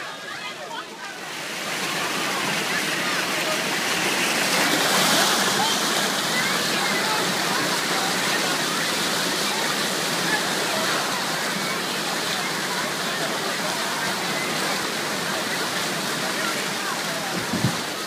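Steady, loud rush of running and splashing water at a water park's slide and splash pool. It swells up about a second in, with children's voices faint beneath it.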